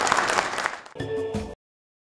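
Audience applauding, dying away under a second in. A brief snatch of music with steady tones follows, then all sound cuts off abruptly about a second and a half in.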